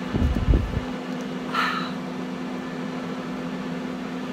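Small handheld battery fan running, a steady low hum, held up close, with a few low thumps in the first second.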